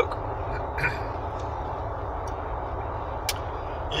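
Steady road and engine noise heard inside the cabin of a moving car on a winding mountain road, with a single sharp click about three seconds in.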